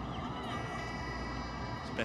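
Steady stadium ambience from a televised football match, with faint distant voices.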